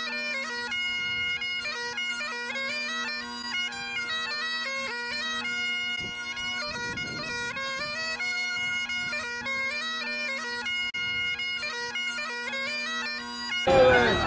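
Bagpipes playing a melody over a steady drone, the tune stepping from note to note without a break.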